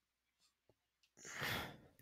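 A person sighing once a little over a second in: a single short breathy exhale that swells and fades.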